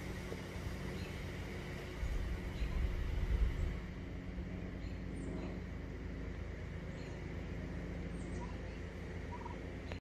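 Turkey gobbles and calls over a steady low background, with a louder low rumble on the microphone between about two and four seconds in.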